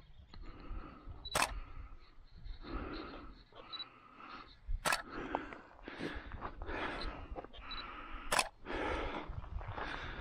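Three sharp clicks about three and a half seconds apart, with soft, repeated rustling in between.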